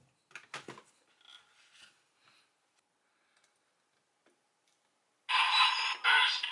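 A few sharp plastic clicks and faint rubbing as a DX toy weapon is handled in the first two seconds. About five seconds in, the toy's built-in speaker suddenly starts playing loud electronic sound effects with music.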